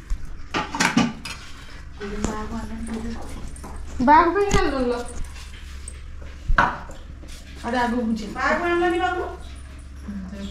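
Steel dishes and spoons clinking now and then, with a few sharp clicks, under voices talking and calling out.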